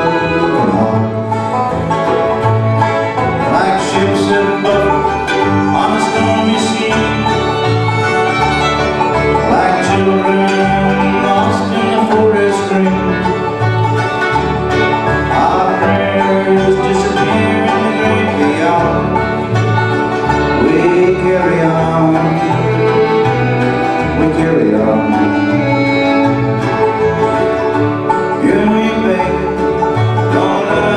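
Bluegrass band playing an instrumental break with no vocals: fiddle, five-string banjo, mandolin, acoustic guitar and upright bass. The bass keeps a steady beat under the melody.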